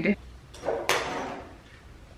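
Plastic Lego bricks clattering as children rummage through a pile on the floor, with one sharp clack about a second in that trails off over half a second.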